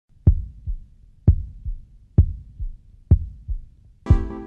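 Heartbeat: four lub-dub beats a little under a second apart, each a louder low thump followed by a softer one.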